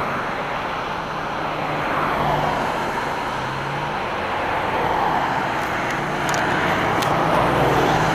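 Road traffic passing close by: tyre and engine noise swelling and fading as cars go past, over a faint low engine hum.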